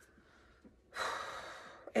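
A woman's long, audible breath lasting about a second, starting about a second in and fading out.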